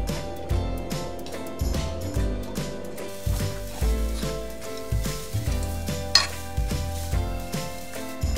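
Seasoned dried squid strips sizzling softly in a frying pan as they are stirred and tossed, with a single sharp clink of the utensil against the pan about six seconds in. Background music with a steady low beat plays throughout.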